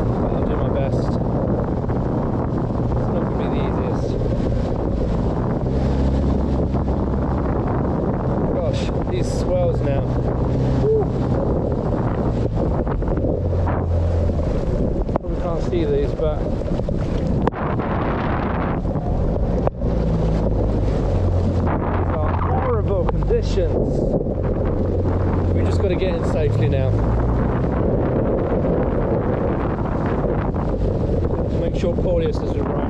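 Loud wind buffeting the microphone over the steady drone of an outboard motor driving a small rigid inflatable boat through choppy sea.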